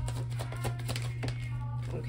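Tarot deck being shuffled by hand: a quick run of light card clicks that thins out in the second half, over a steady low hum.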